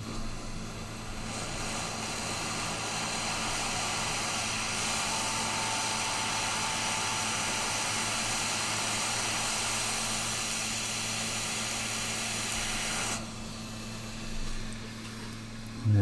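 Hot air rework station set to 400 degrees blowing a steady hiss of hot air onto a circuit board to melt the solder under a chip. The airflow cuts off suddenly a few seconds before the end.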